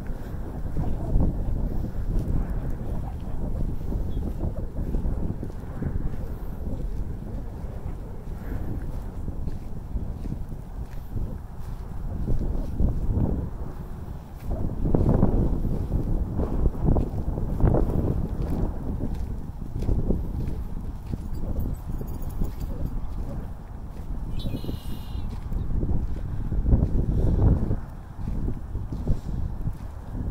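Wind buffeting a phone microphone in gusts, with footsteps crunching on a gravel path.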